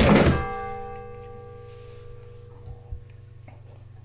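A heavy thunk as a man slumps forward and his head hits a wooden table, together with a ringing musical sting of several held tones that fades away over about three seconds.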